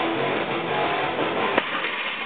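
Background music with guitar playing, and about one and a half seconds in a single sharp impact as the 545 lb barbell is dropped onto the lifting platform.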